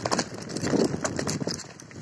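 Bicycle rattling and clattering over a bumpy, rutted dirt path, with irregular knocks and tyre crunch from the rough ground.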